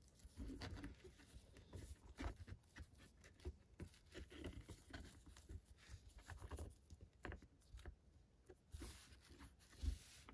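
Near silence with faint, scattered small clicks and rustles of an action figure being handled as a thin staff is fitted into its hand and the figure is posed.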